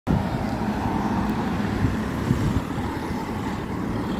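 City street traffic: cars driving past, a steady low rumble of engines and tyres.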